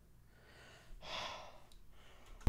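A person's single soft breath out, a sigh, about a second in, with near silence around it.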